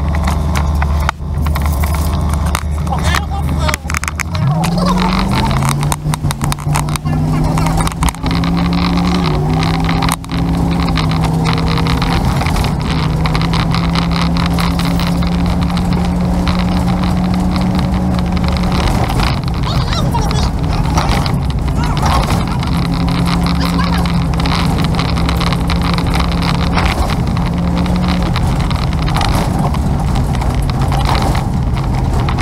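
Vehicle engine idling low, then climbing in pitch about four seconds in as it pulls away from a stop and settling into a steady run at road speed, with a few small shifts in pitch and constant wind and road noise.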